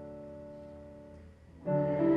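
Piano accompanying a church choir: a held chord slowly fades away, then a new chord is struck sharply near the end.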